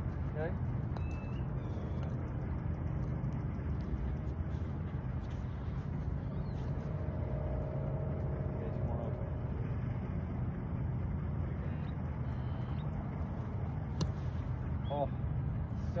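Steady low outdoor rumble. About fourteen seconds in, a single sharp strike: a sand wedge hitting through bunker sand on a splash shot, which comes off well ('so buttery').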